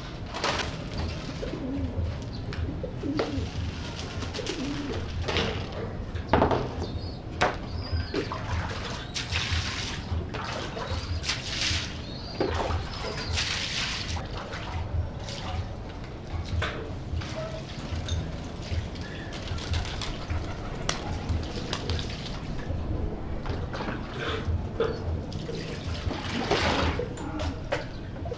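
Domestic pigeons cooing in their loft, with water splashing from a dipper onto the floor and scattered knocks of cage trays being handled.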